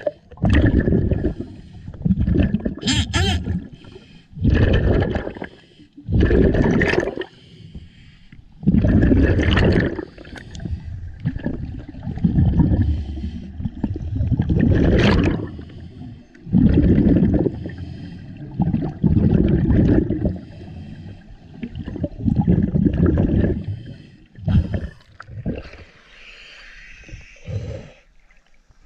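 Scuba regulator breathing recorded underwater: loud rumbling bursts of exhaled bubbles every second or two, fading to a softer hiss near the end.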